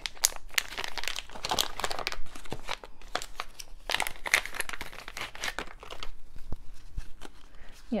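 Thin clear plastic packaging around a deck of game cards, crinkling and rustling in irregular crackles as it is worked open by hand and the cards are taken out.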